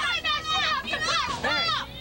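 Children yelling and screaming in shrill, high-pitched voices during a fight inside a school bus.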